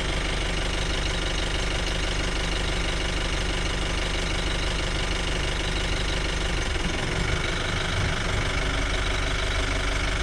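Safari jeep engine idling steadily.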